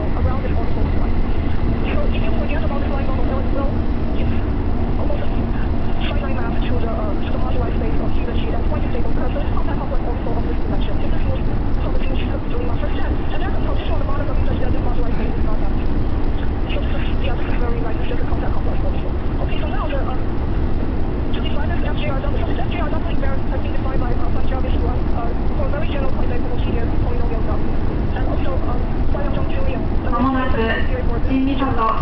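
Train running at speed, heard from inside the passenger car: a steady, loud low rumble of the wheels and running gear on the track, with a faint steady hum that fades after about nine seconds.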